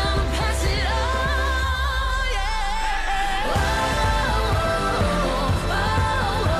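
A background song: a singer holding long, wavering notes over a steady low accompaniment.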